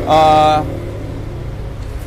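A man's drawn-out "uhh" for about half a second, then a steady low hum in the background.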